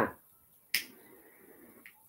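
A single sharp click about three-quarters of a second in, with a faint steady tone lingering for about a second after it.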